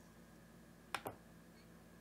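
Two sharp clicks about a tenth of a second apart, about a second in: a computer mouse button being clicked, over a faint steady room hum.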